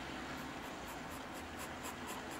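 Pencil scratching on drawing paper in short, quick strokes, about three or four a second, beginning about half a second in.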